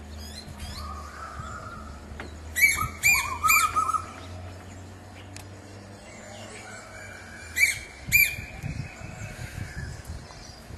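A large black crow-like bird calling loudly: a quick run of four short calls about two and a half seconds in, then two more calls near the end, with fainter bird calls in the background.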